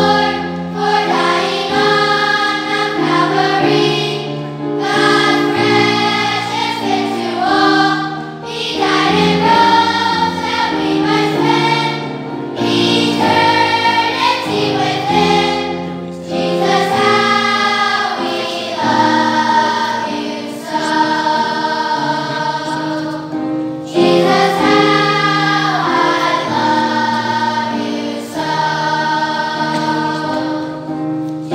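A large children's choir singing a song in phrases of about four seconds, each ending with a brief dip before the next begins.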